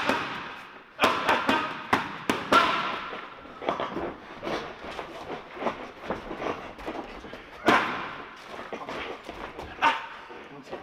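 Boxing gloves striking focus pads: sharp smacks in a quick flurry a second or so in, then scattered single and double hits, with a loud single hit about eight seconds in.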